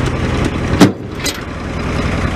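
An engine idling steadily in the background, with one sharp knock a little under a second in.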